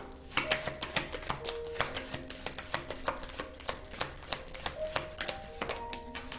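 A tarot card deck being shuffled by hand: a quick, uneven run of light card clicks and slaps.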